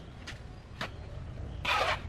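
A steel shovel working a heap of dry sand and cement mix on a concrete floor: a few light ticks of grit, then a rough scraping rush as a shovelful is dug and tipped near the end, over a steady low rumble.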